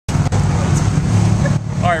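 Race car engines running loud and steady, with a single click shortly after the start. The engine noise eases near the end.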